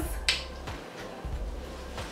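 A single sharp finger snap about a quarter of a second in, followed by a faint low hum.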